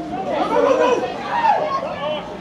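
Several overlapping voices of players and sideline spectators calling out during play.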